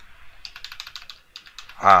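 A quick burst of typing on a computer keyboard, a rapid run of about ten keystrokes in roughly a second.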